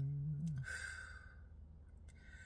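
A woman's voice ends a held, hummed chant note with a slight downward slide about half a second in, then lets out a long breathy sigh that fades away.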